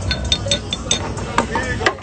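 A run of light, irregular clinks of tableware, like dishes and cutlery, each with a brief high ring, over a steady background of restaurant noise.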